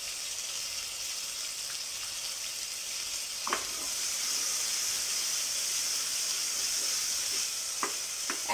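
Chopped vegetables and tomato sizzling steadily in hot oil in an open pressure cooker while a spoon stirs them, with a short knock about three and a half seconds in.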